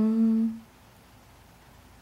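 A woman's voice holding one steady hummed, sung note for about half a second, drawing out the end of a word. Then faint room tone.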